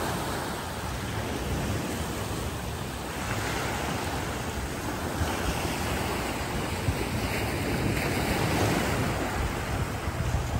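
Small waves washing and breaking onto a sandy beach, with wind buffeting the microphone.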